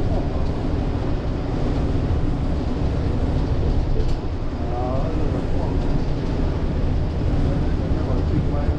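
Steady low rumble of a city bus driving at speed, its engine and road noise heard from inside the cabin. Faint voices come through about halfway through.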